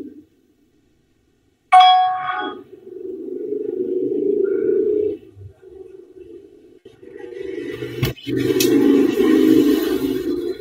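An electronic notification chime of a video call sounds once about two seconds in, a bright ding that fades within a second. Muffled low background noise from a participant's microphone follows, with a sharp click near the end.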